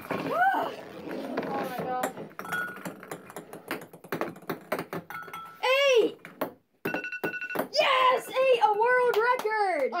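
Excited wordless whoops and shouts, with ping-pong balls knocking against a glass bowl and the table as they are gathered up. An electronic timer beeps on and off.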